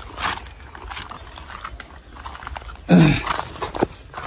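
Soft rustling and scraping of a cloth snake sack being handled and lowered onto dry, sandy ground. About three seconds in comes one short, loud voiced grunt or call that falls in pitch, and a small click follows.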